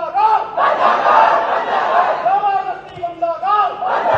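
Members of parliament shouting protest slogans together in unison, a loud group chant of repeated rising-and-falling calls about one a second, obstructing the House.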